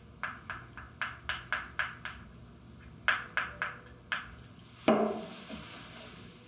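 A spatula stirring and scraping thick cream in a small glass bowl, in short light strokes about three a second. About five seconds in comes a single louder knock with a brief ring.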